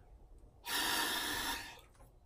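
One hard, forceful exhalation into a peak flow meter, lasting about a second and starting about half a second in. The blow reads about 220, low against the roughly 550 expected for her.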